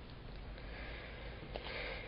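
Faint room tone of a voice recording, with the reader's quiet breath in through the nose near the end, just before he speaks again.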